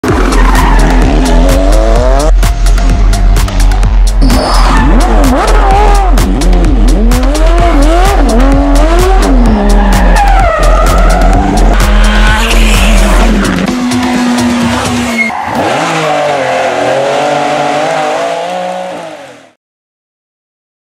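Rally car engines revving up and down hard with tyres squealing through corners, cut together with music whose deep steady bass drops out about two-thirds of the way through. Everything fades to silence just before the end.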